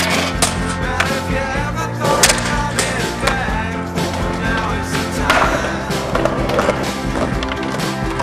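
Skateboarding sounds, the sharp cracks of a board popping and landing several times, over a steady music soundtrack.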